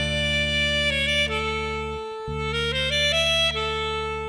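Saxophone playing a slow melodic phrase that steps down and then climbs back up, over a held low accompaniment chord that breaks off briefly about halfway through and comes back.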